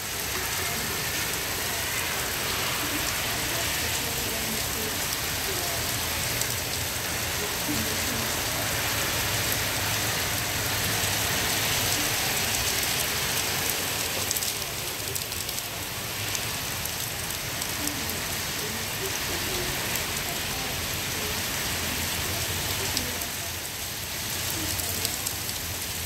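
Steady rain falling, an even hiss with scattered ticks of drops striking surfaces.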